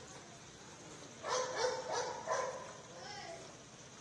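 A dog barking: a quick run of about four sharp barks starting a little over a second in, then a weaker one.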